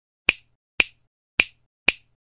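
Four sharp clicks, about half a second apart: sound effects of an intro title animation as its letters appear.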